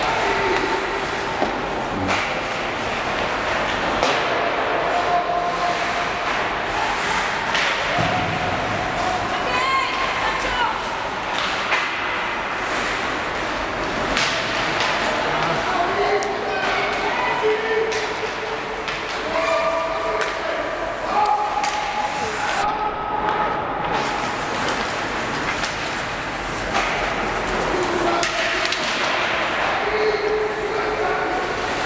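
Ice hockey play in an indoor rink: sticks and puck clacking and thudding against the ice and boards, with players and onlookers calling and shouting in drawn-out cries that echo around the hall.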